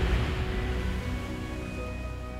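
Film soundtrack music with held notes over a deep, steady low rumble and hiss. The notes come in about a second in, and the whole mix slowly eases off.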